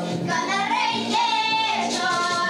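A young girl singing through a microphone, holding long notes, with her vocal teacher singing along beside her.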